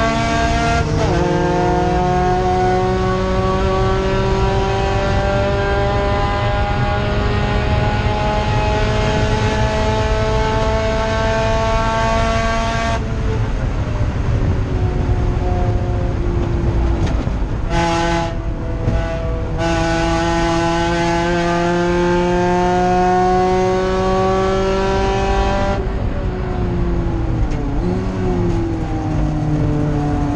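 Race car engine heard from inside the stripped cockpit, pulling hard in gear with its pitch slowly climbing. About 13 seconds in the engine note drops away, with a couple of short bursts, then it pulls and climbs again from about 20 seconds before backing off with a falling and rising pitch near the end, the sound of lifting and downshifting for a corner.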